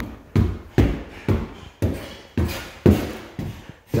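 Footsteps climbing a flight of indoor stairs: a steady run of dull thumps, about two a second.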